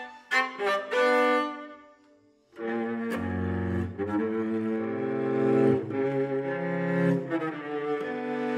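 Solo cello: a run of short, quick notes dies away into a brief pause about two seconds in. It is followed by sustained bowed notes, two or more sounding at once over a low note, with short notes returning near the end.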